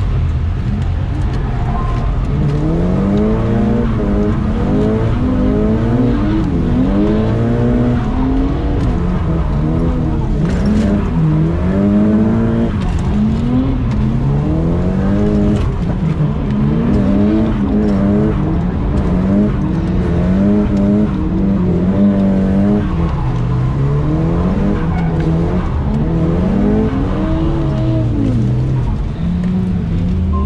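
Nissan S15's engine heard from inside the cabin while drifting, revving up and down again and again as the throttle is worked through the corners. It settles to a low steady note right at the end.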